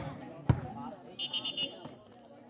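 A volleyball struck hard once, a sharp smack about half a second in, over the voices of players and spectators. A brief high trilling tone follows about a second later.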